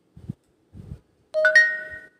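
A bell-like chime: a quick run of a few bright ringing notes about a second and a half in, fading away briefly. Before it come two soft low thumps.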